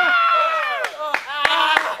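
A man's drawn-out shout with falling pitch, then a run of sharp smacks about three a second.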